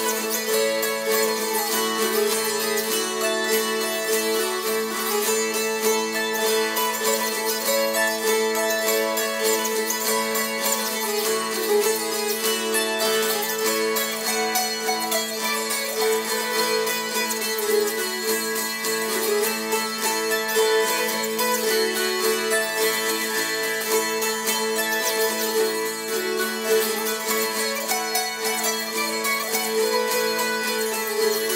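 Hungarian citera (fretted folk zither) playing a folk tune: quick, even strumming strokes across the strings, with the melody stopped along the frets over a steady drone.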